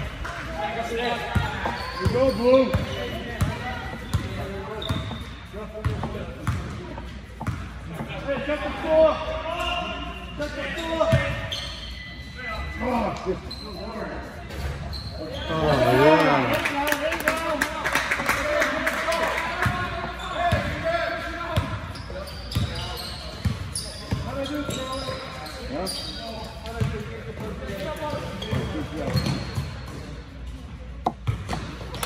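A basketball bouncing on a gym floor during play, mixed with spectators' voices. About halfway through, spectators cheer and clap for several seconds.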